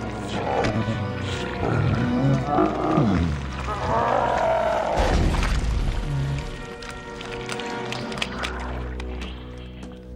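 Film monster made of excrement giving falling, wavering death cries over film score music as it is killed by air-freshener spray. A deep rumble comes about halfway through as it collapses into a pile, and the last few seconds are music alone.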